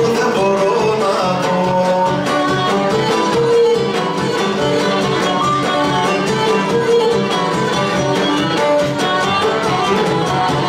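Cretan lyra bowing a melody over strummed laouta in a lively Cretan dance tune, an instrumental passage between sung verses.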